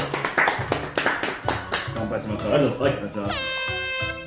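Hands clapping quickly for about the first second and a half, over light background music. Near the end a loud, steady horn-like sound effect sounds, with a brief upward slide at its start.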